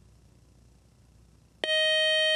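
Near silence, then about one and a half seconds in a loud, steady electronic beep tone starts abruptly: the quiz show's time-up signal, with no answer given.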